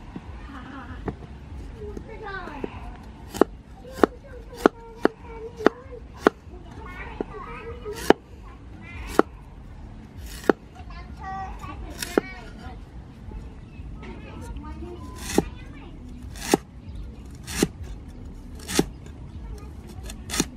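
Steel cleaver chopping a galangal root on a thick wooden chopping block: sharp knocks as the blade hits the wood, at an uneven pace, quicker for a run of strokes a few seconds in, then about one a second.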